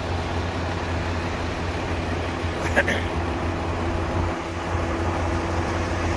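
Semi-truck's diesel engine idling, a steady low hum.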